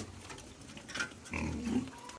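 Young pigs grunting: a short call about a second in and a longer grunt near the end.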